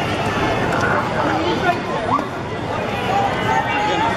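Ballpark crowd chatter: many voices talking at once in the stands, with one voice calling out briefly about two seconds in.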